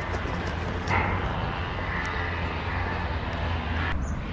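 Steady low rumble of wind buffeting a handheld camera's microphone, over a faint haze of outdoor background noise.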